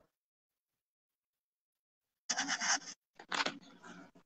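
Dead silence for about two seconds, then two brief scratching noises.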